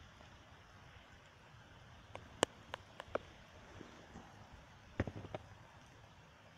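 Heavy rain falling as a faint, steady hiss, with a few sharp taps a couple of seconds in and a short cluster of knocks near the end.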